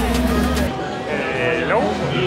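Music cuts off suddenly under a second in. It is followed by a short, wavering, bleat-like vocal sound from a person.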